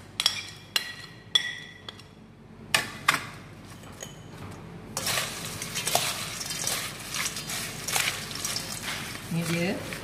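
A metal spoon clinking against a stainless steel bowl several times, each clink ringing briefly. From about halfway, crisp fried banana chips rustle and crackle steadily as they are tossed with a spoon and spatula in the steel bowl.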